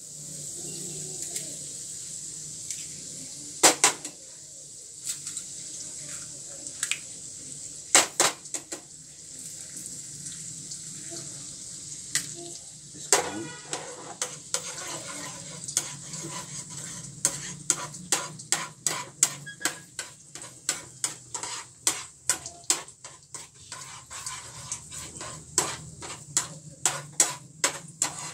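Green garlic frying in oil and butter in a pan, with a steady sizzle throughout. Eggs are cracked against the pan twice, two sharp knocks in the first third. From about halfway a utensil clatters against the pan two or three times a second as the eggs are stirred and scrambled.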